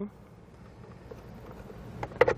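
Quiet outdoor background noise, a faint steady hiss with no distinct clicks or knocks.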